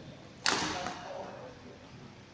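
A badminton racket striking a shuttlecock once: a single sharp smack about half a second in that rings briefly in the hall.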